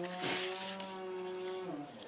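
A woman's voice holding one steady hummed tone for about a second and a half, then trailing off.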